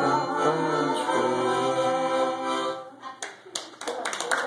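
Harmonica playing several notes at once, the tune ending about three seconds in, followed by a small audience clapping.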